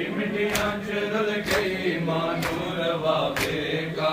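A crowd of men chanting a noha, a mourning lament, together, with rhythmic hand strikes on bare chests (matam) landing about once a second.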